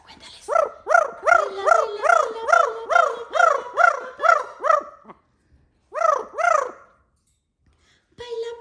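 Yellow-naped Amazon parrot calling in a quick run of about a dozen short, arching calls, each rising and falling in pitch, at about two and a half a second. After a pause it gives two more near the end.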